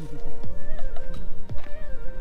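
Background music with a beat playing, over which a goat bleats briefly near the start.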